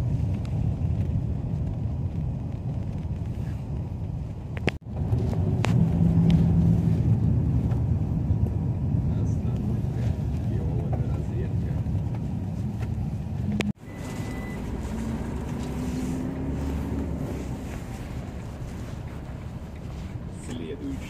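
Cabin noise inside a moving Iveco Daily minibus: steady low engine and road rumble. The sound breaks off abruptly twice, at each cut.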